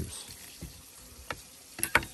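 Crisp fried bacu skin crackling as a serrated knife and fingers break it apart on a plate: a few sharp clicks, with a quick cluster near the end.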